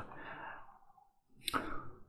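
A man's soft sighing breath out that fades away, then a moment of silence and a quick breath in about one and a half seconds in.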